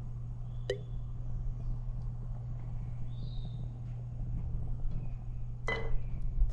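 A steady low hum with a single sharp clink about a second in and another click near the end.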